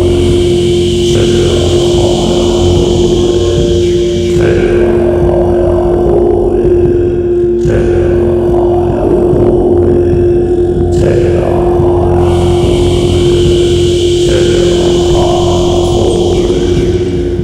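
Shamanic sound-healing music: one steady held tone over a dense, pulsing low drone, with a brighter upper layer that fades out and back in every few seconds.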